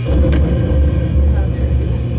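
Live noise-music electronics: a loud low rumble cuts in suddenly over a steady electrical hum, with a sharp click just after it starts.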